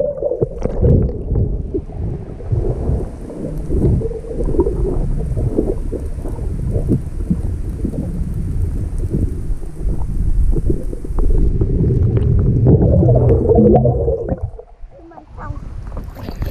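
Dull, muffled underwater rumble and sloshing of water moving around a submerged camera, deep and with no treble. It dips briefly near the end.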